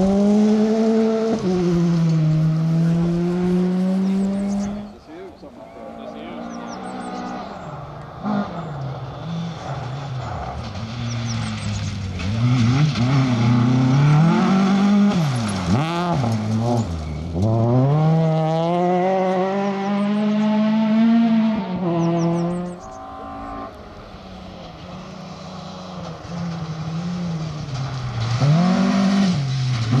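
Rally cars on a gravel stage passing one after another at full throttle: the engines rev hard, their pitch climbing and then dropping at each gear change. A Ford Fiesta rally car comes first, then Volvo saloons.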